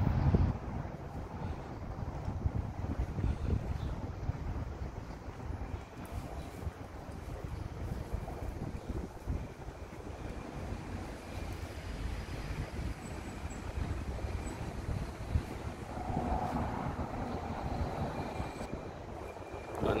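Outdoor city-street background: a low, uneven rumble with no clear single event.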